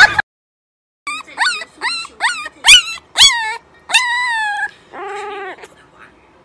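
Young puppy whimpering and yipping, probably in its sleep: a quick string of about seven short, high cries that each rise and then fall, then a longer drawn-out whine and a lower, shorter howl near the end.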